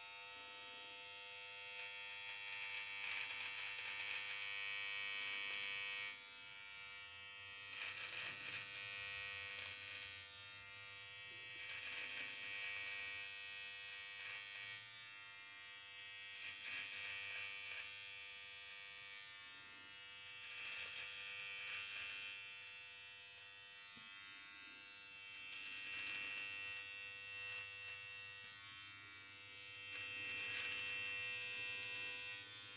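A Gillette Intimate cordless, battery-powered hair trimmer with an 11 mm guide comb runs steadily against a goatee. Its buzz swells for a second or two at a time, every few seconds, as it passes through the beard hair.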